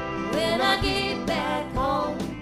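A live folk-americana band playing a song: strummed acoustic strings over a steady beat, with a man singing lead.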